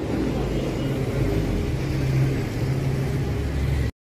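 A truck engine idling steadily with a low, even hum, cutting off abruptly just before the end.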